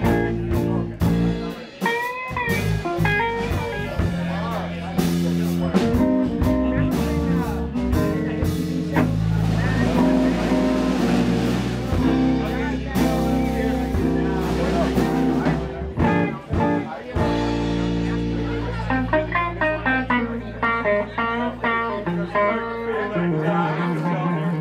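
A live rock-blues trio of electric guitar, electric bass and drum kit playing an instrumental passage. Dense drum hits come early on, long held low bass notes run through the middle, and quick picked electric guitar notes come near the end.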